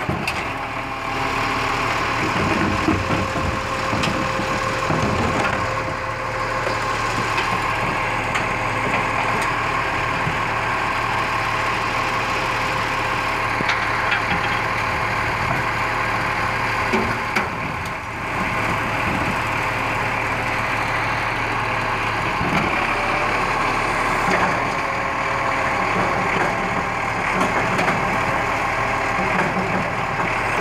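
Side-loading garbage truck's engine running steadily at idle, with scattered knocks and clatter from its lifting arm and the wheelie bins.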